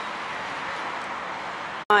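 Steady outdoor background hiss of distant road traffic, even and unbroken, with no clear single vehicle passing. It cuts off abruptly near the end.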